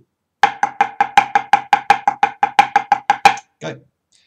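Drumsticks playing accented paradiddles: about seven short, even strokes a second, with every fourth stroke louder, each stroke carrying a light pitched ring, stopping just after three seconds.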